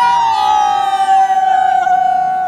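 A group of men cheering together in one long, held shout. Several voices rise in pitch at the start and then hold.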